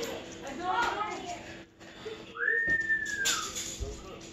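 A single whistled note that slides up, holds steady for about a second, then drops away, with faint indistinct voices just before it.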